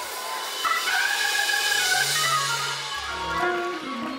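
Church organ playing a few held chords during a pause in the preaching, with faint congregation noise underneath.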